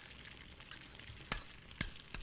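A knife clicking against a glass jar three times, about half a second apart, over the steady hiss of an old film soundtrack.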